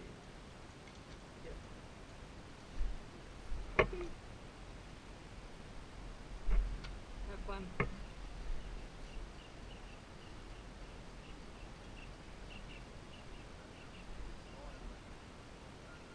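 Quiet outdoor background with a low rumble, a few sharp clicks and knocks about 3 to 8 seconds in, and faint high chirps a little later.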